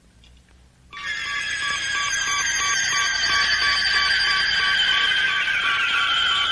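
Electronic sci-fi flying-saucer sound effect from a cartoon soundtrack. About a second in, a cluster of high sustained tones begins, drifting slightly downward over a steady, rapidly pulsing beep.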